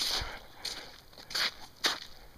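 Footsteps on the ice of a frozen creek: about four short crunching steps in two seconds, the last one with a sharper knock.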